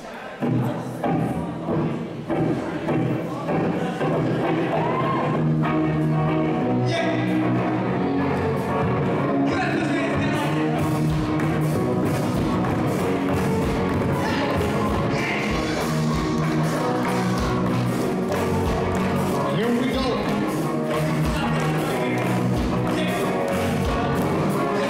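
Live rock band playing through a club PA: electric guitars, bass and a drum kit with a steady kick drum. The song opens with a few accented hits in the first seconds, then the full band settles into a steady loud groove from about four seconds in.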